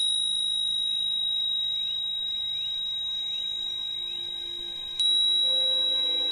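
A high, pure-toned chime rings, struck once at the start and again about five seconds in, each stroke ringing on with a slow fade. Faint short upward chirps sound under it in the first few seconds, and lower, softer ringing tones come in near the end.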